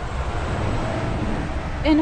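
A car going by on a nearby road: a steady rumble and tyre hiss that carries on until speech resumes near the end.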